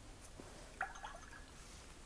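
Paintbrush rinsed in a water jar between colours: a faint splash with a brief clink of the glass about a second in.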